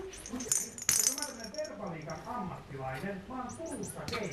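A cat toy's jingle bell clinks and rattles briefly as the toys land, about half a second and a second in, followed by a quiet voice.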